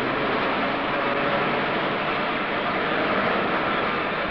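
Electric tram running along street rails: a steady, even noise with no breaks.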